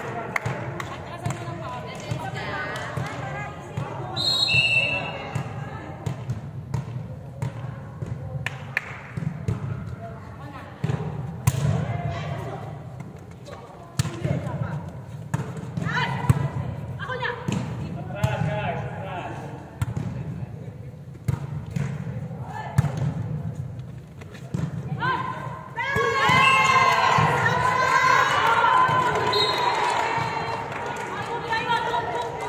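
Indoor volleyball rally in an echoing sports hall: repeated sharp slaps of the ball being hit and thuds of players' feet on the court, over players' calls and chatter. About 26 s in, a burst of loud shouting and cheering from the players as the point ends.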